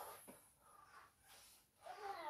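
Near silence: faint room tone with a few faint, short sounds.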